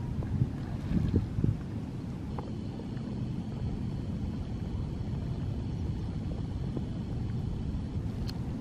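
Steady wind rumbling on the microphone out on open water, with a few soft knocks about a second in.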